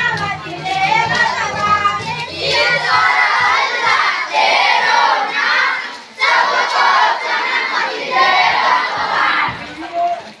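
A crowd of schoolchildren shouting together in runs of a second or two, with short breaks between and a clear pause about six seconds in.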